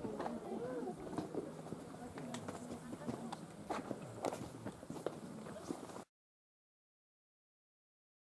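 Voices of people talking at a distance, with scattered sharp clicks of footsteps on loose volcanic rock. The sound cuts off suddenly about six seconds in, leaving silence.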